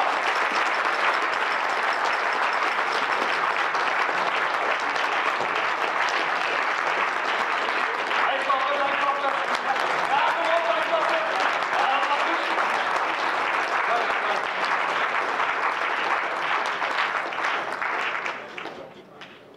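Audience applauding, a dense steady clapping that fades out right at the end.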